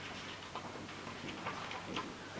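Paper pages being handled and leafed through close to a handheld microphone: a few faint, irregular light clicks and rustles.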